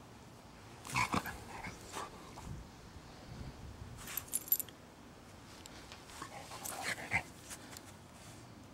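A dog rolling on its back in the grass and making short playful vocal sounds, in two brief bursts about a second in and again near seven seconds. A brief metallic jingle comes around the middle.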